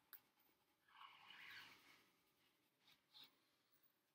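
Near silence, with the faint scratch of a coloured pencil shading on paper for about a second, starting about a second in, and a couple of tiny clicks near the end.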